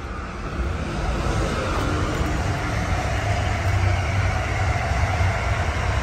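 Rumble of a passing road vehicle, building over the first second and then holding steady.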